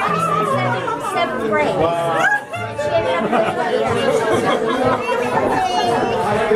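Crowd chatter in a large room over a live rock band of electric guitars, bass and drums. The bass notes are clear in the first second, then the music thins out and talk takes over.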